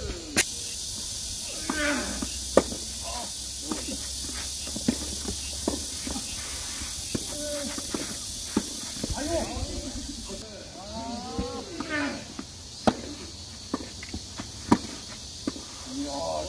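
Tennis balls struck by rackets in a doubles rally: sharp pops every second or two, with short shouts from the players between shots and a steady high hiss behind.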